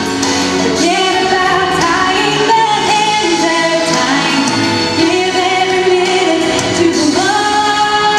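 A woman singing a solo into a handheld microphone over musical accompaniment, with a long held note near the end.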